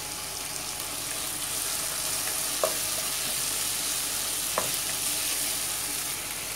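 Sliced onions and chopped tomato sizzling steadily in oil in a nonstick wok as a wooden spatula stirs them, with two short knocks of the spatula against the pan a couple of seconds apart.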